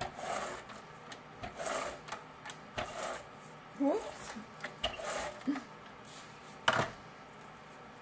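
Handheld adhesive tape runner drawn in short rasping strokes along the edges of a cardstock mat, a stroke every second or so. Near the end comes a single sharp click, the loudest sound.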